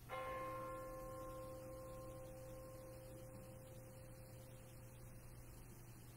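A bell struck once, its clear tone ringing and slowly fading away over about five seconds. It is rung at the elevation just after the words of institution over the communion cup.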